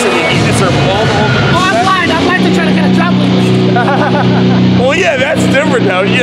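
Men's voices talking and laughing, close to the microphone. About two and a half seconds in, a steady low hum starts underneath and holds.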